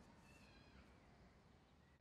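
Near silence: faint outdoor background with a few faint, short high chirps in the first half and one near the end.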